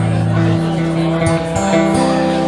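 Band playing live on acoustic and electric guitars with drums, an instrumental passage of held guitar chords. The chord changes about half a second in and again about a second and a half in.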